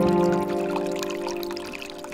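Slow relaxation music, a held chord that fades away, over water pouring steadily from a bamboo fountain spout into a pool.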